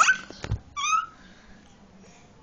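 A baby's short, high-pitched squeal just under a second in, just after a dull low thump.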